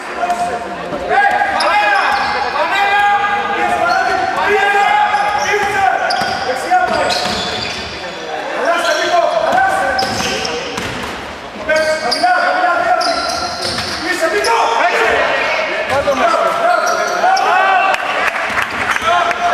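Live sound of an indoor basketball game on a hardwood court: a basketball bouncing and players' raised voices calling out, echoing in a large gym.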